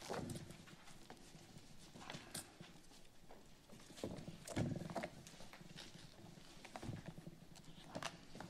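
Scattered light knocks, clicks and rustles of papers and documents being handled and leafed through. The strongest knocks come at the start, around the middle and near the end.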